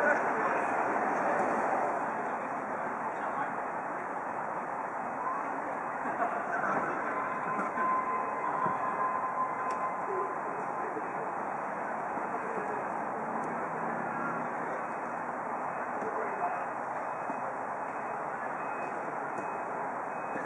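Steady outdoor background noise with futsal players' occasional calls across the court during play, and a faint steady high tone for a few seconds near the middle.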